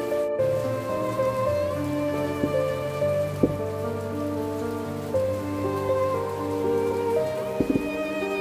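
Slow background music of held, bowed-string notes changing pitch every second or so, over a steady rain-like hiss. A couple of faint clicks stand out, one in the middle and one near the end.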